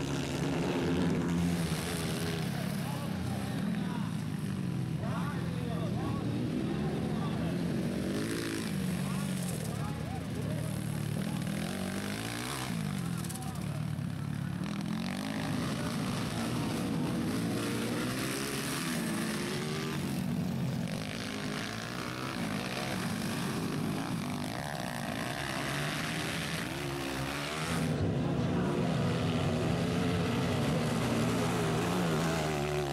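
230cc dirt bike engines racing on a dirt track, the pitch rising and falling again and again as riders rev, shift gears and back off. The engine sound grows louder near the end.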